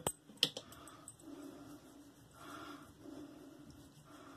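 A small shave-oil bottle being handled: two small hard clicks about a third of a second apart near the start, as it is closed and put down. Then faint soft sounds of hands rubbing pre-shave oil into the face.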